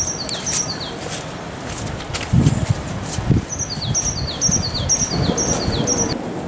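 A songbird repeating a two-note phrase, a high note followed by a lower falling one, about twice a second; it breaks off about a second in and starts again past the halfway mark. Two brief low muffled bumps of noise come in the middle, the loudest sounds here.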